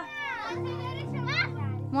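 Children's voices calling out, over background music whose low held notes come in about half a second in.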